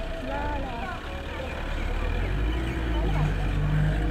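Low, steady engine rumble of a motorcycle idling or rolling slowly on a dirt road, with faint voices in the background in the first second.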